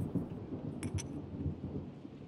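Low steady rumbling ambience, with two quick light clinks of a drinking glass just under a second in.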